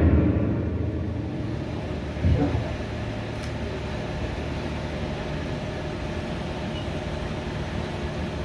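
Stage music with timpani fading out over the first second or two, then a steady low hum of room noise in the auditorium. There is one brief sound about two seconds in.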